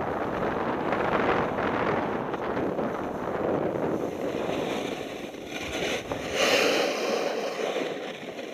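Wind rushing over the microphone of a camera moving down a ski slope, mixed with the steady hiss of sliding on packed snow. A louder, hissier burst comes about six and a half seconds in.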